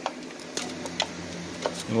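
A few light, sharp clicks and taps as plastic wiring harness connectors are handled against the car's body at the firewall.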